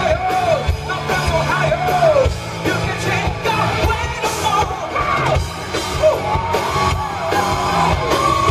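A live rock band playing, with a male lead singer singing and yelling into a microphone over a steady drum beat.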